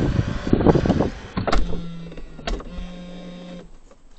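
Rubbing and knocking as the dashcam is handled, with a couple of sharp clicks, then a small electric motor whining steadily for about two seconds inside the car before it stops.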